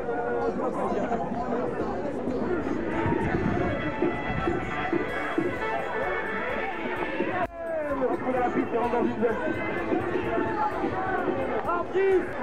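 Many voices talking and calling out at once over background music, with a brief break about seven and a half seconds in.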